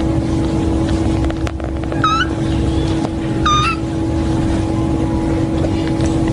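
A newborn kitten mewing twice, two short high-pitched cries about a second and a half apart, over a steady low hum.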